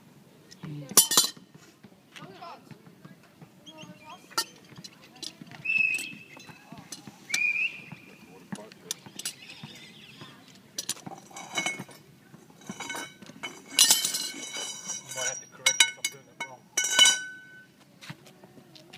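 Metal lifting keys and a pipe clinking and clanking against a metal access cover as the keys are fitted into its lifting holes: a scattered series of sharp metallic clinks, some ringing briefly, loudest about a second in and over the last few seconds.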